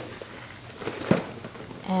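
Meal-kit packaging being handled: a soft rustle of plastic and cardboard, with a couple of small knocks about a second in.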